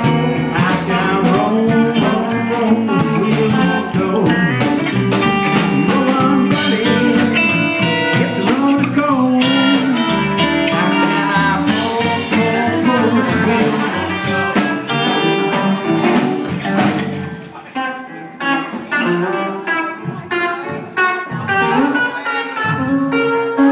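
Live blues band playing, led by fingerpicked electric guitar (a Gretsch hollowbody) over drums and bass, in an instrumental stretch. The band drops quieter for a few seconds in the second half, then comes back up.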